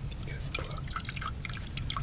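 Berry juice dripping and trickling from a mesh strainer into a metal pot as a spoon presses cooked berry mash through it: many small, irregular wet clicks and drips, over a low steady hum.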